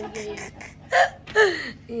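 A person's voice: low talk, then two short, loud vocal exclamations about a second in, the second falling in pitch.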